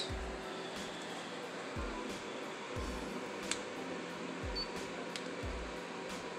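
Small fan of a water-tank mini air cooler running steadily with an even rushing hiss, with a few low thumps and one sharp click about three and a half seconds in.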